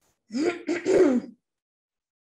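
A woman clearing her throat, two quick rasping bursts lasting about a second in all.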